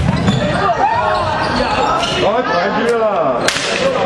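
Basketball game sounds in a sports hall: sneakers squeaking on the wooden court in two flurries and a ball bouncing, with a sharp knock about three and a half seconds in.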